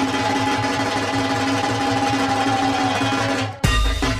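Bengali dhak drumming. A fast, continuous roll runs under a steady ringing tone, then breaks off about three and a half seconds in into heavy, separate deep drum strokes.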